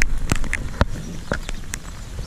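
Irregular sharp ticks of raindrops striking close to the microphone, several a second, over low background noise.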